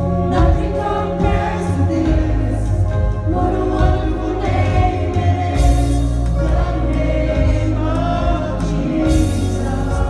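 Live worship band: a woman sings lead into a microphone with other voices joining, over acoustic and electric guitars and a steady bass.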